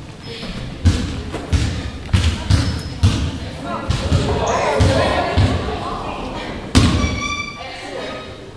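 Basketball bouncing on a hardwood gym floor, a string of irregular thumps with one loud one near the end, amid chatter of players and spectators that echoes in the gym.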